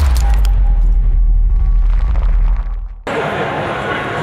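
A logo-sting sound effect: a deep bass boom that holds for about two and a half seconds and then fades. About three seconds in it cuts off abruptly, and people's voices follow in a large room.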